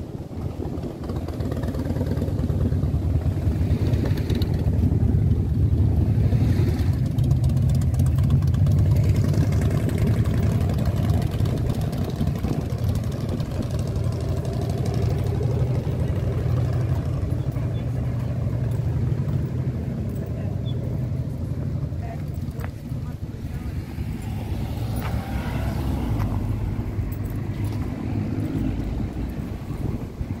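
Road traffic on the street, with wind rumbling on the microphone: a deep, steady rumble that builds over the first couple of seconds and stays loud.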